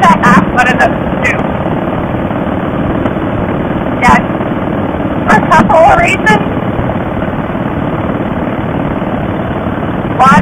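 Steady rush of wind on the camera microphone over a Harley-Davidson Softail Fat Boy's V-twin engine at cruising speed. Brief snatches of voice break through near the start, about four seconds in, and again around five to six seconds in.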